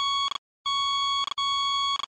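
Electronic warning beeps: a steady, buzzy high tone repeated in long beeps of about two-thirds of a second each, separated by short gaps.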